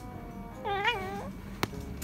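Calico kitten chattering at prey spotted through a window: one short, wavering call of about half a second, a little over half a second in. A single sharp click follows near the end.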